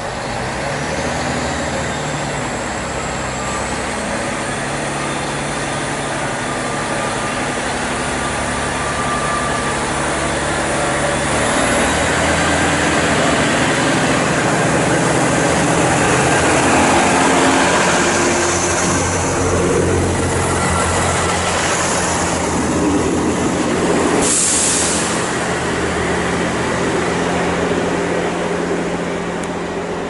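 Diesel multiple-unit trains at a station platform: a Class 158 DMU's engines running, with a thin rising high whine early on. Another train passes close by, loudest about halfway through, and there is a short hiss of air about three-quarters of the way in.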